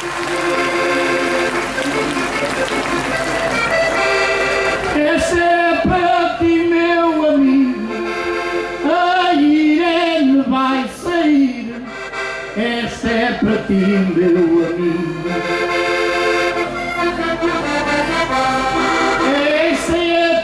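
Diatonic button accordion (Portuguese concertina) playing a traditional folk tune, with a steady chordal accompaniment under a moving melody.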